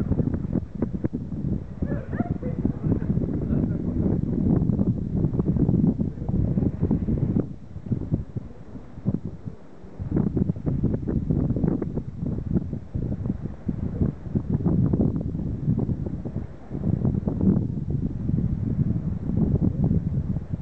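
Wind buffeting the camera microphone: a loud, uneven low rumble that swells and fades, easing off briefly about eight seconds in.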